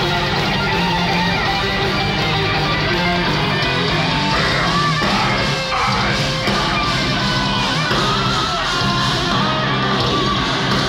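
Live melodic death metal band playing loud: distorted electric guitars over bass and drums, steady throughout.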